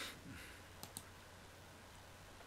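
Two quick computer mouse clicks close together, about a second in, over a very quiet room.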